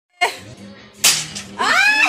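Two sharp slaps or knocks about a second apart, each dying away quickly, then a high-pitched rising vocal cry near the end.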